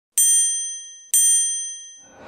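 Two bright, bell-like dings about a second apart, each struck sharply and ringing out as it fades: the chime sound effect of an animated channel-logo intro.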